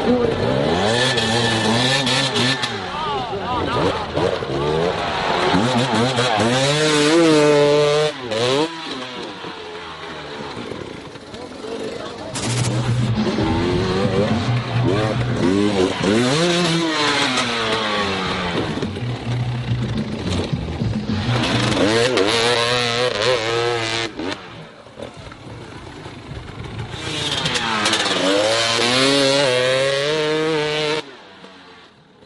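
Dirt bike engines revving hard on a steep hill climb, their pitch surging up and falling back again and again as the riders fight for grip. The sound changes abruptly a few times as different bikes are heard.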